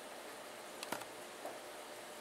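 Faint handling of a plastic CPU cooler mounting bracket as mounting screws are pushed through its holes, with one sharp click about a second in and a few lighter ticks.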